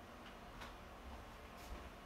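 Faint footsteps on a hardwood floor: a few light, sparse ticks.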